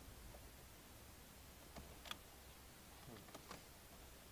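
Near silence with a few faint clicks from a small Torx key working an airbag retaining screw behind a steering wheel: one sharper click about two seconds in and a few lighter ones near the end.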